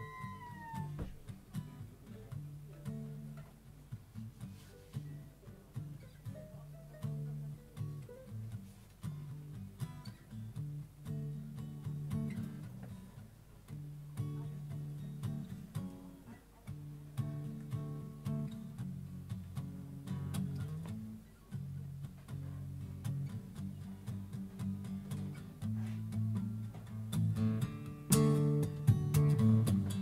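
Solo acoustic guitar playing an instrumental intro, with the strumming growing louder and busier near the end. Right at the start a brief high squeal rises and falls once.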